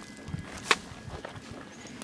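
Footsteps on a dirt and gravel path, with one sharp click about two-thirds of a second in.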